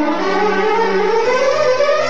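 Orchestral music from a Bollywood film song, an instrumental passage with a slow upward glide over held low notes.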